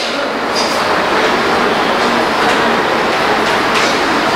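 Chalk writing on a blackboard: a steady scratching hiss with a few faint taps as the strokes are made.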